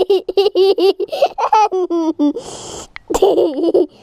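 A young child laughing in rapid, high-pitched bursts, with a breath drawn in about halfway through and a second run of laughter near the end.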